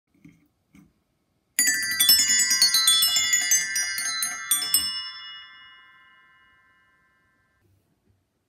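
A set of rainbow-coloured bells played in a fast run of bright ringing notes for about three seconds, the last notes ringing on and fading away.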